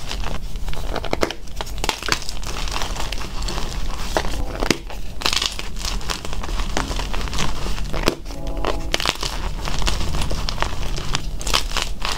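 Hands crushing and crumbling blocks of gym chalk into powder, a dense crackly crunching full of small sharp snaps, with a short lull a little past the middle.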